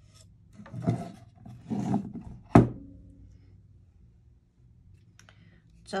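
Mini ink pad rubbed along the edge of a painted pumpkin cutout: two short scrapes, then a sharp knock about two and a half seconds in.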